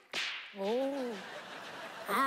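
A quick whip-like swoosh sound effect, a hiss that falls fast from very high in pitch, at a cut between shots. About half a second later comes a short vocal sound that rises and falls in pitch.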